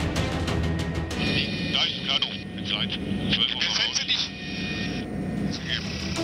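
A pilot's voice over the helicopter intercom, thin and narrow like a radio, calling out that the canoe is dead ahead, starting about a second in, over background music and helicopter cabin noise.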